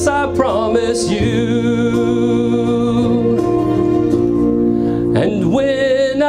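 A man singing a love ballad into a microphone over instrumental accompaniment, holding long notes with vibrato; a new sung phrase starts about five seconds in.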